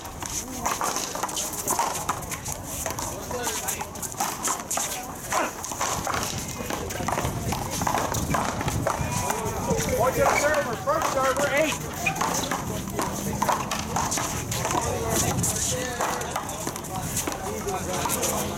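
One-wall paddleball rally: a ball smacking off paddles and the concrete wall again and again, with shoes scuffing on the court, among people's voices.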